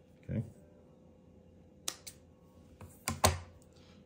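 A single sharp click, then a quick cluster of sharp clicks about three seconds in, the loudest of them, from hands handling sewing tools and thread at a table.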